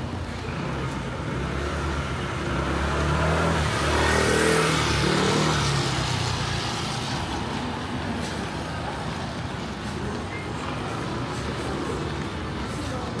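A motor vehicle passing on a wet street: its engine and tyre hiss swell to a peak about four to five seconds in, then fade back into the steady street noise.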